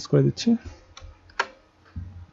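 Computer keyboard keys pressed a few times while text is deleted and edited, as separate clicks with a sharper one a little past halfway.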